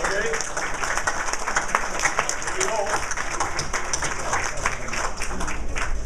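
Audience applauding: a dense, steady patter of hand claps, with brief voices heard over it.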